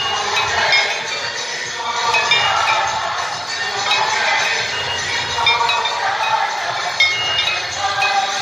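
Many metal hand bells ringing rapidly and all at once, a constant clanging with a dense din beneath.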